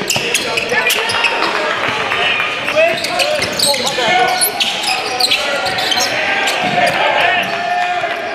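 Basketball game sounds in a large gym: the ball bouncing on the hardwood court and players' shoes on the floor, a run of short sharp knocks, with players and spectators calling out over it.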